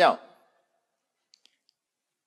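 A man's voice ends a word at the start, then a pause of silence broken by three faint, short clicks about a second and a half in.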